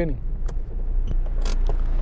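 Steady low rumble of a car heard from inside its cabin, with a couple of faint clicks.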